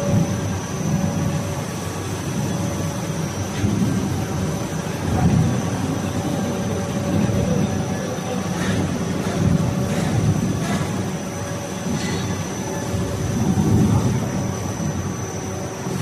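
ABA blown film extrusion line running: a steady mechanical drone with an unbroken high whine over an uneven low rumble. A few light clicks come in the second half.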